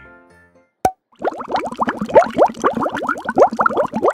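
Liquid being poured, gurgling and bubbling in a rapid stream of short rising plops, after a single sharp click just before a second in. Background music fades out at the start.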